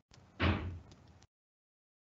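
A single short thud, about half a second in, with a few faint clicks around it, picked up on a conferencing microphone before the audio is gated to silence.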